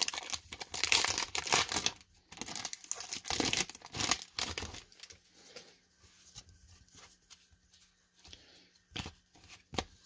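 A baseball card pack's wrapper being torn open and crinkled, a quick run of ripping and rustling for about the first four seconds. After that come softer rustles and light clicks as the stack of cards is handled and pulled apart.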